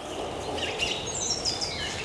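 Outdoor forest ambience: a steady background rush with small songbirds chirping high, including a quick run of short descending chirps about a second in.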